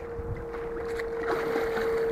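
Water sloshing and splashing in the shallows as a large pike thrashes at the end of the line near the bank, with a steady faint hum underneath.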